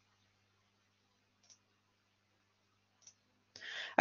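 Quiet room with two faint clicks, about a second and a half apart, from advancing a presentation slide, over a faint low electrical hum; a breath in just before the end.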